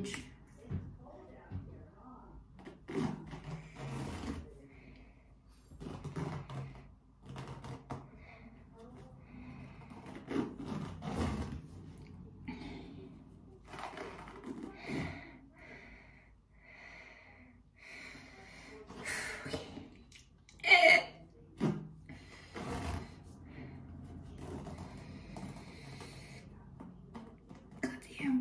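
Quiet rustling and handling of an elastic pressure bandage as it is unwound from the upper arm, with breaths and low murmurs in between. A short, louder sound about 21 seconds in.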